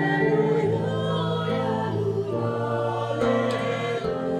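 A choir singing in sustained, held chords: the Gospel Acclamation sung at Mass before the Gospel is read.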